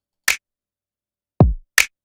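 Programmed drum pattern playing back through the UAD Empirical Labs Distressor compressor plugin, driven hard with its distortion and high-pass filter engaged. A sharp bright hit comes about a third of a second in, then a deep kick whose pitch drops quickly about a second and a half in, then another bright hit just before the end.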